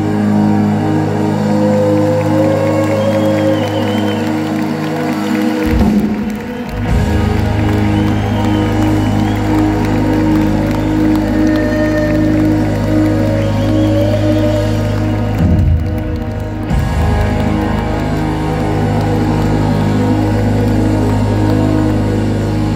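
Live band playing an instrumental passage: long held keyboard chords over a steady low bass, heard from the audience in a large hall. The bass drops out briefly twice, about six seconds in and again around sixteen seconds.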